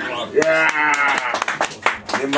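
A man's drawn-out vocal call, held on one pitch for about a second, then a run of sharp, irregular handclaps once the guitar has stopped.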